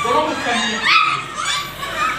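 Puppies barking in a few short, rising calls, with people talking.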